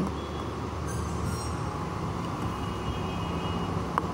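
Steady low mechanical hum of room ventilation running at an even level.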